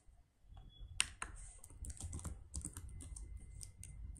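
Typing on a computer keyboard: a run of irregular keystroke clicks that begins about a second in, after a near-quiet pause.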